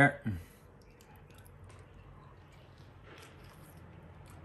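Faint clicks and soft wet sounds of a man picking apart fish and eating it with his fingers.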